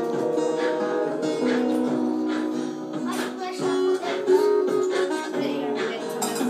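A loop playing back from a looper pedal: layered, held guitar notes through a small amplifier, with sharp strikes on a handheld cymbal over the top.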